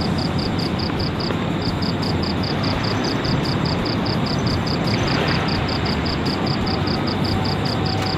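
A steady rushing noise, with an insect chirping in a fast, even rhythm of about three to four chirps a second.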